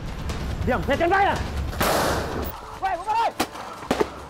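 Men shouting in bursts, with a loud bang about halfway through and a sharp crack near the end.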